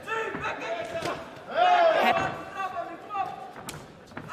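Men's voices calling out during a kickboxing exchange, with one loud drawn-out shout about one and a half seconds in, and a single sharp smack of a blow landing near the end.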